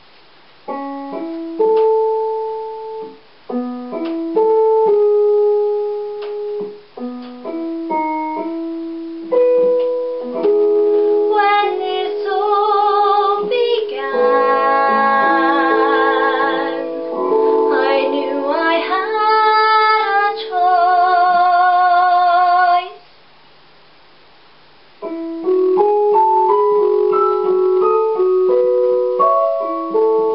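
A piano backing track playing separate notes and chords, joined about a third of the way in by a young woman singing with vibrato over fuller accompaniment. The music breaks off for about two seconds, then the piano comes back in.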